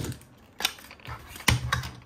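Hard plastic hull pieces of a toy pirate ship clicking and knocking together as they are handled. There are a few sharp clicks, the loudest about one and a half seconds in, followed by a couple of quicker ones.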